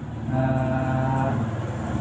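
A man's voice holding one long, steady, drawn-out vowel at a flat pitch for about a second and a half, a hesitation sound between phrases; it starts shortly after the beginning and stops near the end.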